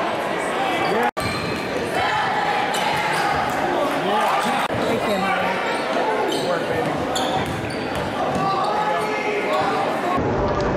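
Basketball game in a gymnasium: a ball dribbled on the hardwood court amid players' and spectators' indistinct shouts and chatter, echoing in the hall. The sound cuts out for an instant about a second in.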